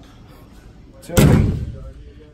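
Pickup tailgate of a 2016 GMC Sierra 2500 HD dropping open and landing with one heavy clunk about a second in, then dying away.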